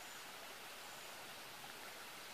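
Faint, steady hiss of quiet outdoor background noise, with no distinct events.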